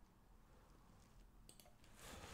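Near silence: room tone, with a couple of faint clicks about one and a half seconds in.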